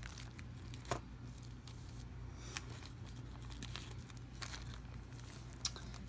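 Faint crinkling of small plastic zip-lock bags being handled: a few sharp crackles, a second or two apart, over a low steady hum.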